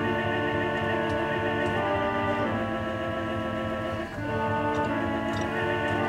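Pipe organ playing slow, held chords on the Choir organ's Vox Humana 8' stop, a reed stop voiced to imitate the human voice. The chords change a few times, with a short break about four seconds in.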